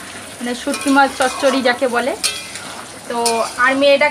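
Metal spatula stirring curry frying in a steel kadai, with scraping clicks over a sizzle.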